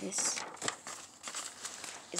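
Lined notebook paper in a spiral-bound sketchbook rustling as pages are handled and turned, with a few sharp crinkles.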